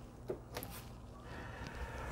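Quiet room tone with faint handling of a plastic action figure as it is set standing on a tabletop, with a couple of light ticks in the first second.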